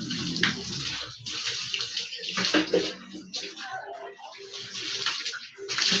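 Water poured from a hand dipper over a person's head and body, splashing onto the floor in several pours with short breaks between them.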